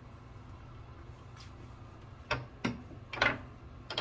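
Quiet room hum, then three or four short knocks and clicks in the second half, from an aluminium beer can being handled after a drink.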